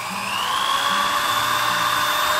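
Drill spinning a wire wheel brush against a pine board, a steady motor whine that rises slightly just after the start, over the scratchy sound of the wire bristles biting into the wood along the grain. The brush is stripping out the soft wood between the harder grain lines to give it an aged, textured surface.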